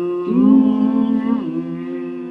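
A person humming a slow melody with closed lips in long held notes. The note changes about a third of a second in and again about a second and a half in.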